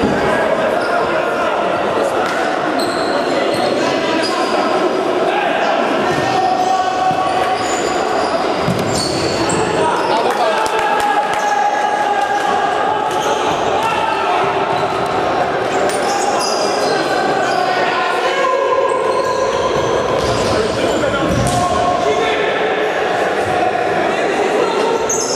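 Indoor futsal play echoing in a large sports hall: the ball thudding off feet and the floor, shoes squeaking on the court, and players' voices calling out.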